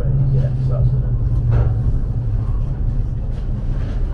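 Steady low rumble and drone heard inside the passenger saloon of a Class 707 electric multiple unit as it runs into a station.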